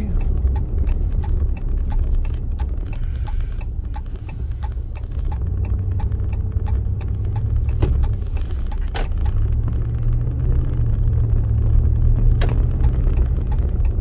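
Truck running at road speed, heard from inside the cab while towing a trailer: a steady low engine and road rumble, the engine note swelling twice. Faint regular ticking runs through the first half, and there are a few sharp knocks or rattles in the second half.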